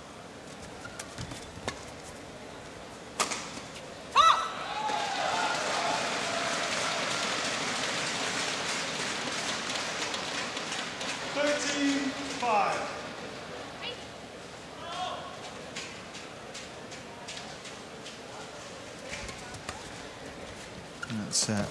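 Badminton rally: racket strokes on the shuttlecock as sharp clicks, ending with a hard hit and a shout about four seconds in, followed by crowd applause and cheering with voices that lasts several seconds before dying down. A few lighter racket clicks follow near the end.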